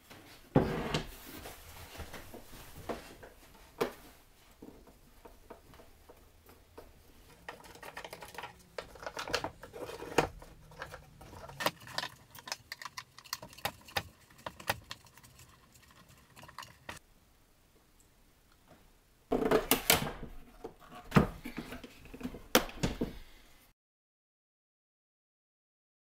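Plastic clicks, knocks and rattles of a Samsung canister vacuum cleaner's housing being opened and taken apart by hand, parts set down on a wooden bench. The handling comes in irregular bouts, busiest near the end, and then cuts off suddenly.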